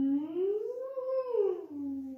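A woman's voice humming a siren, the 'silent siren' vocal exercise: one smooth, unbroken slide up from a low note to a higher one and back down, then holding the low note. The seamless glide is the exercise's point, filling the space between notes as practice for legato.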